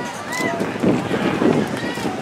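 Polo ponies' hooves on sand, a dense run of hoofbeats about halfway through, with faint crowd voices.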